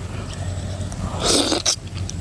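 A person slurping eel soup off a spoon: one short wet suck about a second and a half in, over a steady low background hum.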